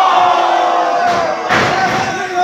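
Wrestling crowd shouting and yelling with long, held calls, then a heavy thud on the ring canvas about three-quarters of the way through as a wrestler is taken down.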